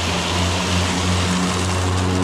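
Ego Z6 battery-powered zero-turn mower running with its blades spinning: a steady electric motor hum under a loud rushing whoosh from the cutting deck.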